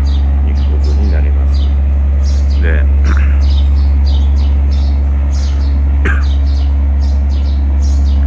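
Birds chirping again and again in short high calls over a loud, steady low hum.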